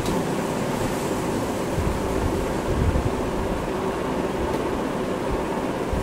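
Steady low rumbling background noise, even throughout, with no distinct events.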